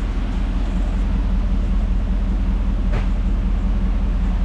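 2013 GMC Yukon's 6.2-litre V8 idling steadily, heard close to the exhaust tailpipe. A single light click about three seconds in.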